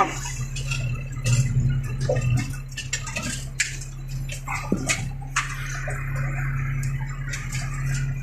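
Tractor engine running with a steady drone, heard from inside the cab, as the tractor drives over rough, stony forest ground. Scattered knocks and rattles come from the cab and machine jolting over the rocks.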